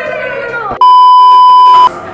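A loud, steady, single-pitched electronic bleep about a second long, of the kind edited in to censor a word. It cuts in just after a person's voice breaks off, a little under a second in.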